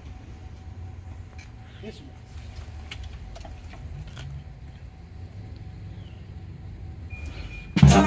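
A low steady rumble with a few faint clicks, then near the end a military brass band of saxophones, trumpets, trombones and drums strikes up loudly all at once on the conductor's downbeat.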